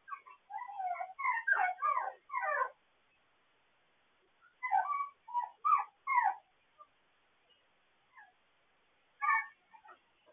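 Young puppies whimpering and yipping in short high calls that slide in pitch: a quick run of them in the first three seconds, a group of four about five to six seconds in, and one more near the end.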